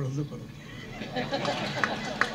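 A man's amplified voice trails off, and about half a second in an audience starts laughing, a diffuse crowd sound quieter than the speech.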